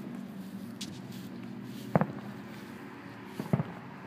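Distant fireworks going off: a sharp bang about two seconds in and a quick pair near the end, over a steady low hum.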